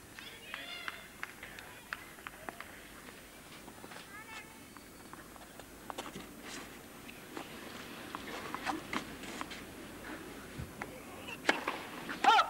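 Low murmur of a tennis stadium crowd between points, with scattered faint voices and light taps. Near the end comes one sharp crack of a racket striking the ball, followed by a short vocal sound.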